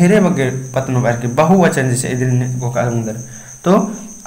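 A man talking slowly, drawing out his syllables, with one long held tone in the middle. A steady high-pitched whine runs underneath.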